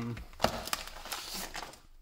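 Crinkling and crackling of a metallised anti-static plastic bag as a circuit board is slid out of it, with a sharp crackle about half a second in, dying away near the end.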